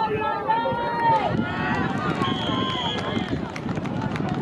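Spectators at a football game shouting during the play, then a referee's whistle blown once, a steady high tone lasting about a second, near the middle.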